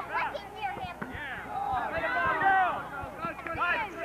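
Many high voices shouting and chattering at once, children calling out over one another during an outdoor game, with no single clear speaker.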